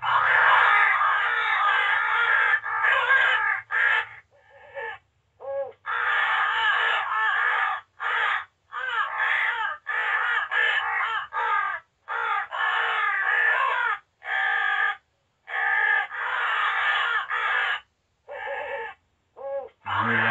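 Recorded crows cawing loudly in dense, overlapping bursts, played through the small built-in speaker of a Cass Creek Ergo electronic crow call. This is its 'Owl fight' sound: a group of crows mobbing an owl. The calling breaks off abruptly every second or two, with short silent gaps.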